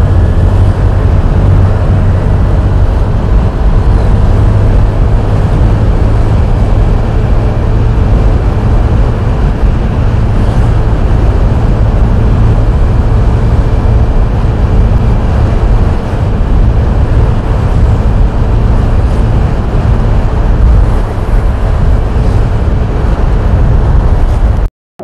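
Loud, steady wind noise buffeting an action camera's microphone on a moving motorcycle, mixed with the motorcycle's engine and road noise.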